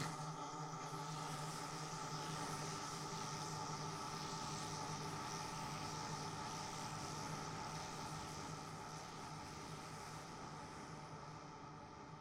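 A steady hum made of several held tones over a light hiss, slowly fading out toward the end.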